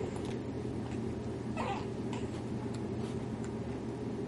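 A baby's short, high vocal coo about one and a half seconds in, over a steady low background hum.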